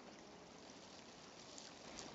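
Near silence: the faint, steady rush of a creek.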